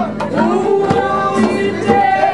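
Group singing with a hand drum beaten by the palm, the drum strikes cutting through the voices.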